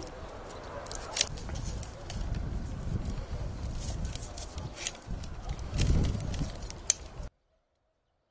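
Hand pruning shears and loppers cutting fruit-tree branches: a few sharp snips, the loudest about a second in and near the end, over a low rumble. The sound cuts off abruptly about seven seconds in.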